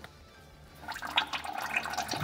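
Engine oil starting to run out of the mini excavator's loosened oil filter and trickling steadily into a plastic drain pan about a second in.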